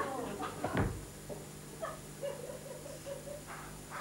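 A man's brief wordless vocal sounds, with a short low thump a little under a second in and a faint hum in the middle.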